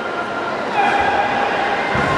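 Several voices shouting and yelling at a high pitch, growing louder just under a second in.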